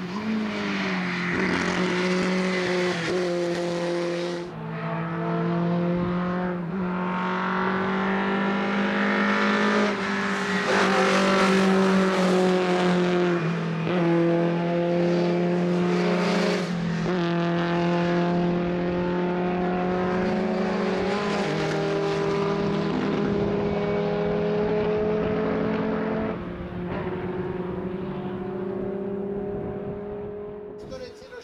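Škoda 130 RS race car's four-cylinder engine held at high revs through the corners, its note stepping up and down several times with gear changes and throttle.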